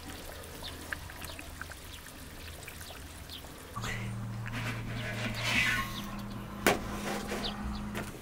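Chicken frying in oil in a pot, a faint sizzle with scattered small pops. Then a steady low hum with soft rustling, and one sharp knock near the end.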